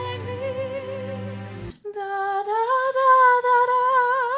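Symphonic metal playing: a female lead singer holds a long note with vibrato over the band, and the music cuts off abruptly a little under two seconds in. A woman then sings a sustained note unaccompanied, sliding up slightly and then wavering with vibrato, as a demonstration of the vocal tone.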